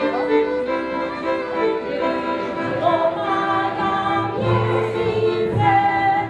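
Folk music: a bowed-string melody, with a group of children singing along from about halfway through.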